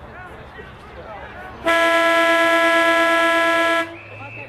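Football ground siren sounding one long, steady blast of about two seconds, marking the end of the third quarter.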